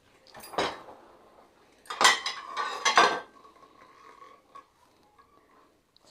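Ceramic plates and a stainless steel pot clinking and knocking against a dishwasher's wire rack as they are handled: a few sharp clatters, the loudest about two and three seconds in, followed by a brief ring.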